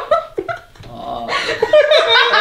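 A small dog held in someone's arms vocalising: a couple of short sounds, then a longer wavering one in the second half.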